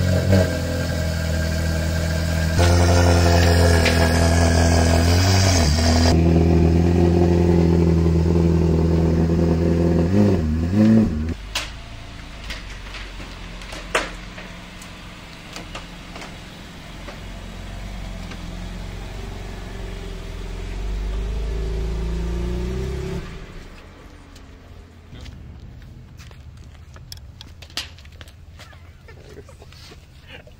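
A Ferrari's engine running at a steady fast idle inside an enclosed trailer, revved in two short blips, then cutting to a quieter, lower engine sound that swells briefly about two-thirds of the way in before fading. A few light clicks near the end.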